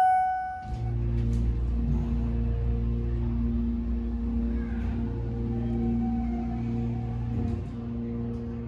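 An elevator chime tone rings out and fades in the first second, then the Schindler 300A hydraulic elevator's pump motor starts and runs with a steady electric hum as the car travels up.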